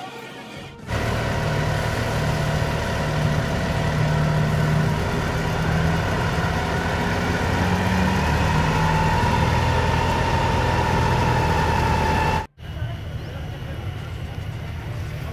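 A fire engine's motor running steadily with a low, even drone. It starts suddenly about a second in and cuts off abruptly near the end.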